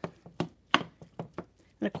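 Wooden spoon knocking against a stainless steel skillet while stirring a ground beef, pepper and sliced sausage mixture: about five sharp knocks, roughly three a second.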